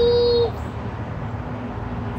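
A toddler's long, steady, high-pitched held vocal note, a drawn-out "cheeeese", breaking off about half a second in, followed by low background noise.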